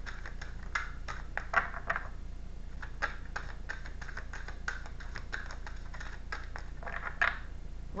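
A deck of tarot cards being shuffled by hand: an irregular run of soft clicks and slaps as the cards riffle against each other, over a steady low hum.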